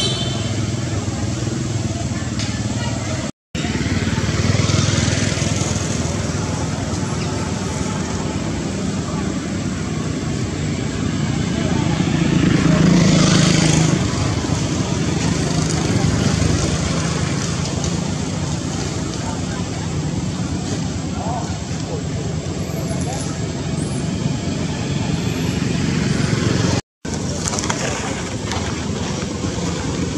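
Steady outdoor background of road traffic with motorbikes and indistinct voices. The sound cuts out twice, each time for a split second.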